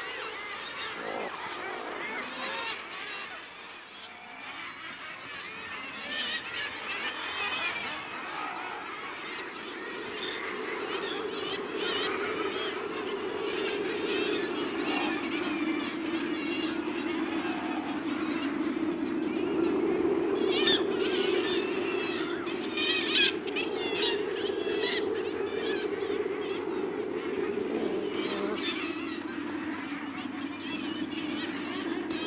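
Glaucous gulls and their downy chicks calling on a seabird cliff, many short overlapping calls. From about a third of the way in, a thicker lower colony din joins them, with a few sharper, louder calls about two-thirds of the way through.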